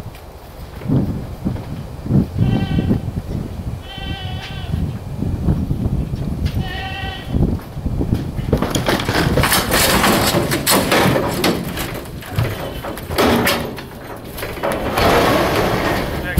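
A goat bleating three times, short high calls a second or two apart, over low knocks. From about halfway through, a loud run of clattering and banging, like the metal trailer and gate being knocked about as livestock move.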